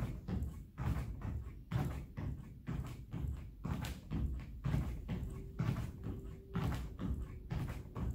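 Feet landing in a steady rhythm of jumping jacks on a thin exercise mat over a wooden floor, a dull thud about twice a second.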